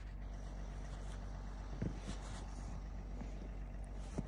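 A steady low mechanical hum, like an engine running, with a couple of soft knocks about two seconds in.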